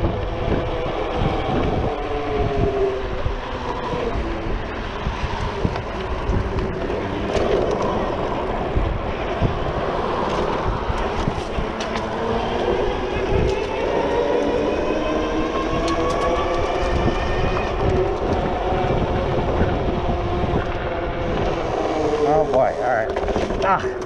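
Super73 R electric bike's hub motor whining as it rides, its pitch rising and falling with speed, over a steady low rumble of wind on the microphone.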